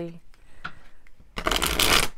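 A deck of tarot cards being shuffled by hand: light handling noise at first, then a loud, rapid flutter of cards for the last half second or so.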